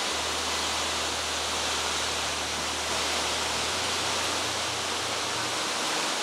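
Steady rushing noise over a low hum: the running of a coal-fired campus steam plant. The hum shifts slightly a little past halfway.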